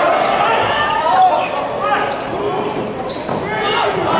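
Indoor volleyball rally heard courtside in a large echoing hall: sharp ball hits about two seconds in and near the end, over players shouting calls and shoes squeaking on the court.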